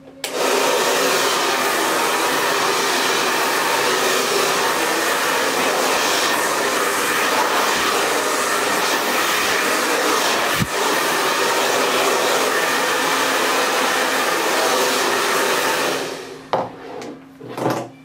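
Chaoba 2000-watt hair dryer running with a steady, loud rush of air, with a single click about ten and a half seconds in. It stops suddenly about sixteen seconds in, when its plug comes out of the socket.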